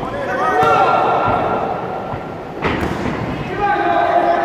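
Kickboxing bout: people shouting in the hall, with one sharp smack of an impact about two and a half seconds in.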